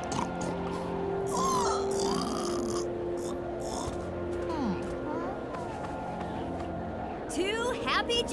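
Cartoon soundtrack: background music with long held notes under short gliding squeaks and grunts from animated javelinas.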